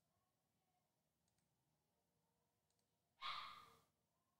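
Near silence with a few faint clicks. About three seconds in comes a brief rush of noise that fades away within a second.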